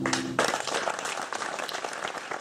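Final held piano chord breaking off about half a second in, as an audience bursts into applause with many hands clapping.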